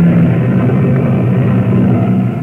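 Opera performance in an old recording: a loud passage of low sustained notes, dull and without treble.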